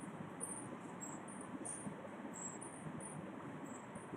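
Faint, short high-pitched chirps, like insects such as crickets, repeating irregularly several times a second over a steady low hiss.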